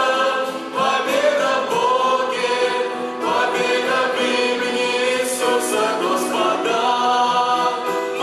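Worship team of two women and two men singing a Russian-language worship song together into microphones, with long held notes.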